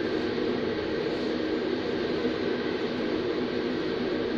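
Steady hiss with a low hum underneath: constant background room noise, with no distinct event.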